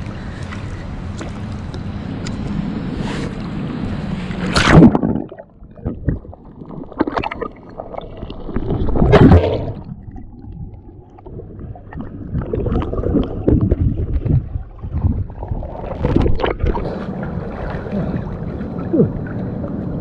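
Swimming-pool water splashing and sloshing around a camera dipped into it. A steady hiss comes first, then a loud splash about five seconds in as the camera goes under. Muffled underwater gurgling and sloshing follow, with another loud splash about nine seconds in.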